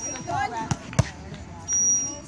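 A volleyball smacked twice on the court, two sharp hits about a third of a second apart, among players' and crowd voices; a short high referee's whistle sounds near the end.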